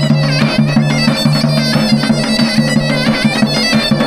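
Regional folk wedding music: a bagpipe, the tulum typical of the eastern Black Sea, plays a fast, ornamented melody over a steady drone, with regular strokes of a davul bass drum.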